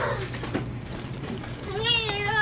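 A high-pitched voice calling out near the end, over a steady low hum, with a short click at the very start.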